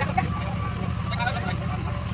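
Background voices of people talking over a steady low rumble.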